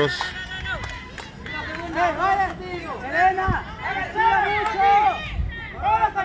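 Several high-pitched young voices chanting and calling out across a baseball field, in drawn-out, sung-out phrases that start about two seconds in.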